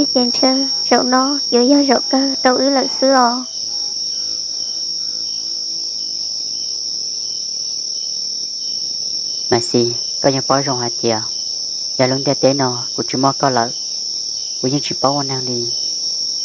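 Crickets trilling in one steady, high continuous note.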